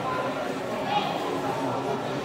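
Indistinct background chatter of several people talking in a busy public space, with one brief louder moment about a second in.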